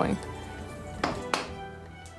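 Background music, with two quick hammer taps on the wooden trailer shell about a second in.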